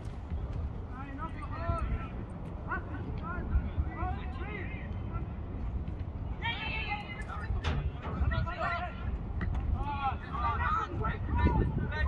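Distant shouts and calls from players and people on the sidelines across a football pitch, over a steady low rumble of wind on the microphone.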